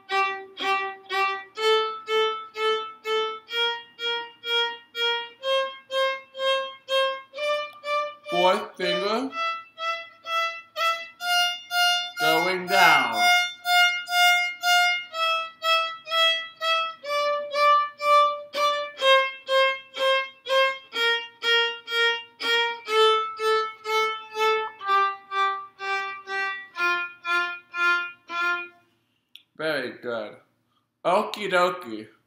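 Violin playing an F major scale one octave up and back down, each note bowed four times in a row as even quarter notes, starting from F on the D string, with the top note reached about halfway. Two short spoken cues cut in over the playing, about a third of the way in and near the middle.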